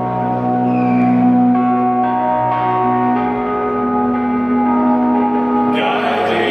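A sustained, bell-like synthesizer chord in live concert music, held between sung lines, its notes shifting a couple of times. A fuller sound comes in near the end.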